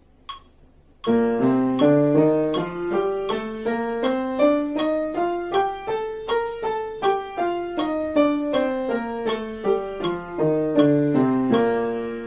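Yamaha upright piano playing a B-flat major scale forte and legato with both hands together. The scale starts about a second in, runs up in even steps and then back down, and ends near the close.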